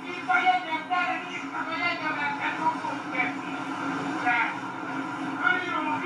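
Indistinct voices of people talking on a tram, over the steady low rumble of the tram running.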